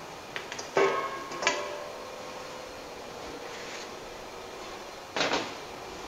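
Stainless steel bowls knocking together at a dough mixer's steel bowl: two sharp metallic clanks about a second in, with a ringing tone that fades over a couple of seconds, and another clank near the end.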